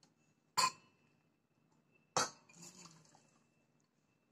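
Stainless steel measuring cup clinking twice against metal, with a faint metallic ring after each clink. After the second clink comes a short splash of hot water poured into a stainless steel bowl.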